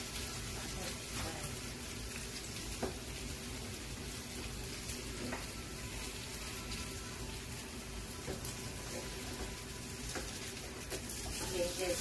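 Potato and vegetable pancakes frying in oil in a frying pan, a steady sizzle, with a few faint taps of the spatula and chopsticks against the pan.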